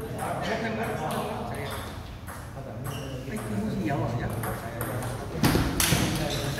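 Table-tennis balls clicking off paddles and the table in rallies, an irregular run of sharp ping-pong hits, with voices alongside. A louder, noisy burst comes near the end.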